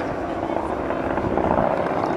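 Piston-engine propeller warbird flying overhead: a steady engine drone.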